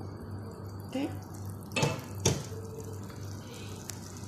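Steady hiss of a pan of browned onions and spices cooking with saffron milk just poured in, with two sharp knocks about two seconds in.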